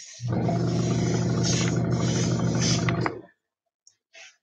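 Small airbrush air compressor's electric motor running with a steady hum and hiss of air, starting just after the start and cutting off abruptly about three seconds in.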